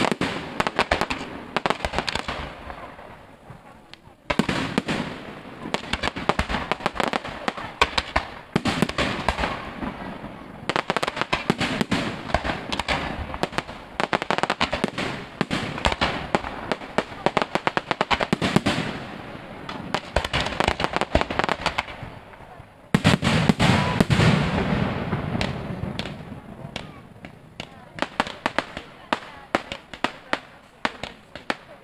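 Fireworks display: dense crackling and popping from spark fountains and aerial shells, coming in several waves that each start suddenly, with the loudest volley about three quarters of the way through.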